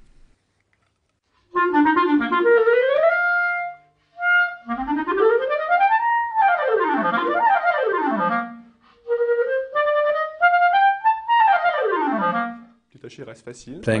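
Clarinet played through a Vandoren Masters mouthpiece: three quick phrases of runs and arpeggios climbing and falling in pitch, starting about a second and a half in.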